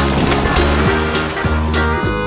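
A cartoon water-splash sound effect, a sudden rush of noise that fades away over about two seconds, over upbeat background music with a steady beat.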